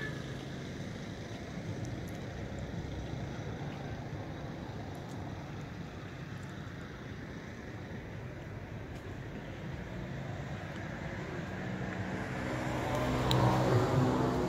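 Steady low rumble of road traffic, growing louder near the end as a vehicle comes close, with a single click shortly before the end.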